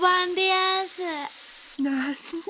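A cartoon character's voice singing out loud in long, held notes, the last one sliding down in pitch; a second, lower voice starts near the end.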